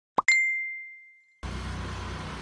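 A quick rising pop, then a bright bell-like ding that rings out and fades over about a second. About one and a half seconds in, it cuts to a small scooter engine running, a low pulsing hum under outdoor noise.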